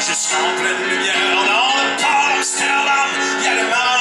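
Live music: a man singing a French chanson in a wavering voice over a steady instrumental backing.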